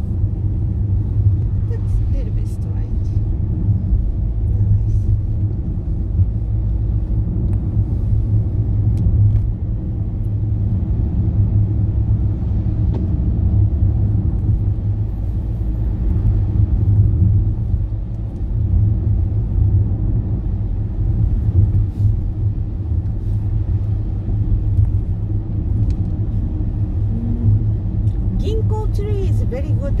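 Car interior road noise while driving on wet tarmac: a steady low rumble of engine and tyres, heard from inside the cabin.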